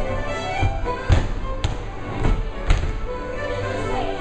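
Live contra dance band of fiddles, accordion and keyboard playing a dance tune. About five sharp thumps from dancers' feet on the wooden floor cut through in the middle, two of them louder than the music.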